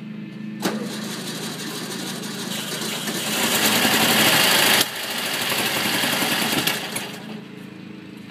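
1964 Volkswagen Beetle's air-cooled flat-four engine revved hard from a low run: it surges just under a second in, builds to its loudest around three to four seconds, drops off sharply just before five seconds, then eases back down by about seven seconds. The engine had sat unrun for over ten years.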